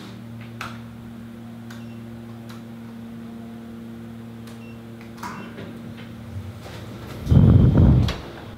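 Steady electrical hum inside a lift car, with a few faint ticks. Near the end comes a loud low rumble as the lift doors open.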